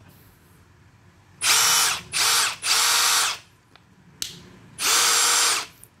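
Milwaukee M18 FUEL Surge hydraulic impact driver run free with nothing in the bit, in four short trigger pulls, each spinning up and winding down. Three come close together about a second and a half in, and the last comes near the end.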